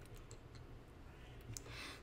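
Quiet room tone with a low hum, a few faint light clicks in the first half second, and a soft intake of breath near the end.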